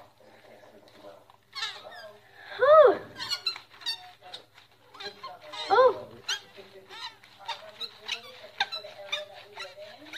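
Gloved hands squishing and mixing a raw ground-beef meatloaf mixture in a stainless steel bowl, making a run of wet clicks and squelches. Two short high squeals, each rising then falling, come about three seconds in and again about six seconds in.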